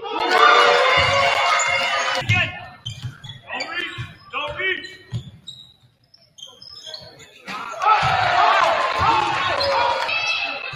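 Basketball game sound in a gymnasium: a ball dribbling and bouncing on the hardwood floor. Loud shouting voices from players and stands fill the first two seconds and come back from about eight seconds in.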